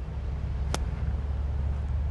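A golf club striking the ball on a fairway shot: one short, crisp click, over a steady low outdoor rumble.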